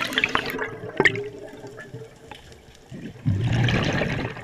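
Scuba diver breathing through a regulator underwater: an exhalation's bubble burst tails off at the start, a quieter stretch follows with a click about a second in, and the next exhalation's bubbles start a little after three seconds.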